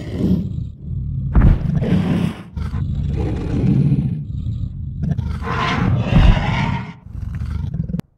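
Computer-generated dinosaur roar and growl sound effect, a run of deep, rough roars with louder swells about a second and a half in and again near six seconds, cutting off abruptly at the end.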